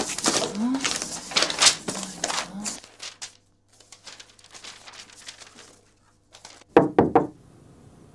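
A few quick knocks on a door near the end, after a quiet stretch with a low steady hum.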